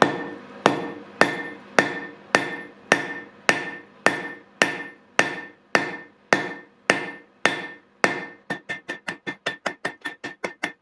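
Hand hammer forging a thin tombac (low-zinc brass) rod on an anvil to reduce its diameter for wire drawing. Steady blows come about two a second, each leaving a ring, then turn quicker and lighter, about three a second, in the last second or so.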